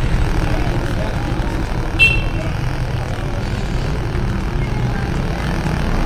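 Steady low rumble of street traffic and road noise heard from a moving pedicab, with a brief high-pitched chirp about two seconds in.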